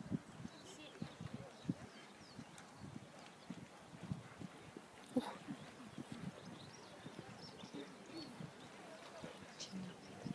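A horse cantering on a sand arena: a run of faint, irregular, muffled hoofbeat thuds, with one louder short sound about halfway through.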